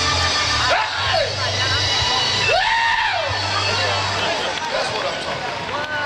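Live gospel music: the band holds a low sustained note that drops out about four seconds in. Over it, voices cry out in long rising-and-falling calls.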